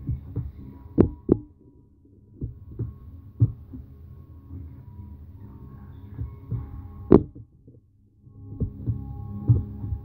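Irregular dull thuds of feet and body landing on the floor close by, the loudest about a second in and at about seven seconds, over a low steady hum.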